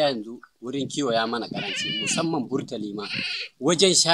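A man speaking in a local language, with a long quavering bleat from sheep or goats through the middle.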